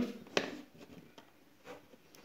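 Hands working a metal spring clip on the plastic housing of an LED recessed downlight: one sharp click about half a second in, then a few faint handling ticks.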